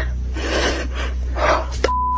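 A woman breathing hard and gasping in fright, quick noisy breaths about two a second. Near the end a short steady beep cuts in: a censor bleep over a swear word.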